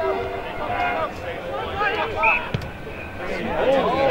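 Several voices shouting and calling at a distance, overlapping: footballers calling to each other on an Australian rules football field.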